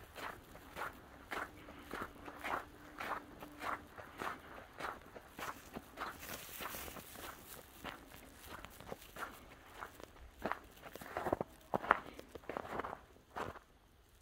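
Footsteps walking at about two steps a second on a road covered in packed snow and slush, with a few louder steps near the end before they stop.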